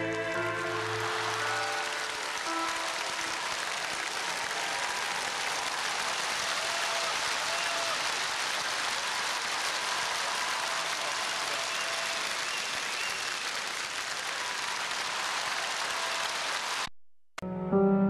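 Audience applause rising over the final notes of a song and holding steady, then cutting off abruptly near the end.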